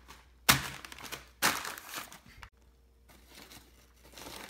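Paper bag crinkling in two rough bursts about a second apart, then quiet.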